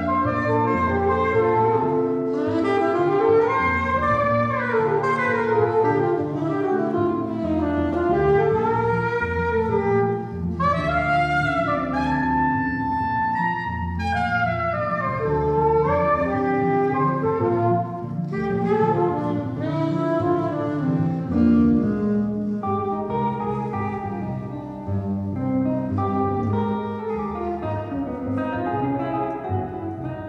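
Jazz trio of saxophone, double bass and guitar playing a tune, the saxophone carrying a gliding melody over the bass and guitar.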